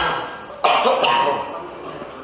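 A person coughing once: a sudden loud burst about half a second in that dies away within about half a second, over low room noise.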